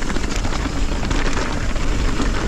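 Mountain bike rolling fast down a dirt trail of stones and pine needles: steady tyre and wind rumble on the microphone, with many small rattles and clicks from the bike.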